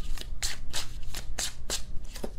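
A deck of tarot cards being shuffled by hand: a quick, irregular run of card clicks and slaps.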